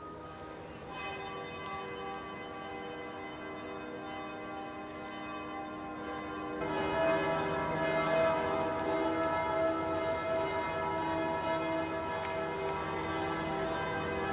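Church bells ringing, several overlapping and sustained, growing clearly louder about halfway through.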